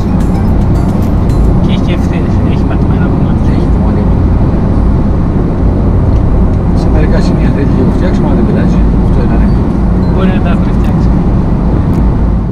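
Steady road and engine noise inside a car cabin at motorway speed, with voices talking now and then over it.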